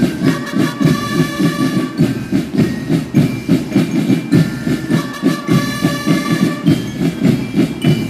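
School marching drum band playing: a fast, steady beat of snare and bass drums, with long high notes held over it by the band's melody instruments.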